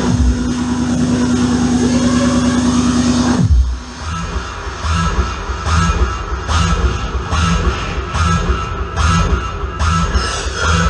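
Hard trance played loud over a club sound system. A held low synth note with a pounding pulse under it slides down in pitch and drops out about three and a half seconds in. After a brief gap the kick drum and hi-hat beat comes back in.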